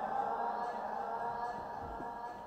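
Electronic sound score built from recorded audience voices, algorithmically altered and played back as a dense, sustained wash of overlapping voice-like tones that slowly fades. A soft low thump comes near the end.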